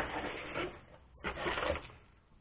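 A cardboard mailer box being opened by hand: flaps scraping and rustling in two short bouts, with plastic packaging crinkling.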